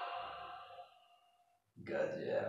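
A held, steady tone fades away during the first second, then after a short silence a man lets out a breathy sigh near the end.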